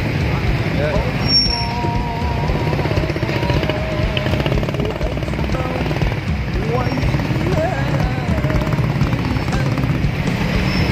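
Busy crowded street: many motorcycle engines running at walking pace under a continuous hubbub of voices. A wavering held tone rises above it about a second and a half in.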